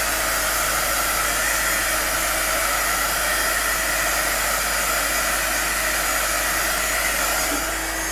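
Electric heat gun blowing steadily over a wet acrylic pour painting, a continuous rush of hot air that cuts off near the end.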